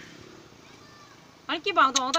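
Low background noise, then a high-pitched voice starts about one and a half seconds in, its pitch rising sharply before it runs on into speech.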